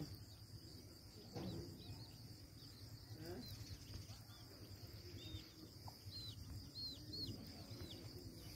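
Aseel chicks peeping: a series of short, high cheeps, coming thicker in the second half.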